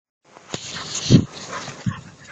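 A dog barks once, short and loud, about a second in, with a smaller sound near the end, over a steady hiss.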